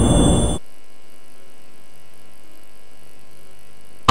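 The close of a film trailer's soundtrack: a loud, dense wash of sound that cuts off abruptly about half a second in. A faint steady hum with several even tones follows.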